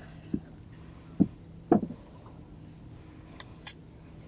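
Three dull knocks within about a second and a half, then two faint clicks, from an angler's spinning rod and reel being handled while jerking a heavy jig; a steady low hum runs underneath.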